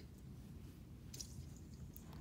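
Faint low room rumble with one brief soft rustle a little past a second in, from someone moving about on carpet while handling pillows and blankets.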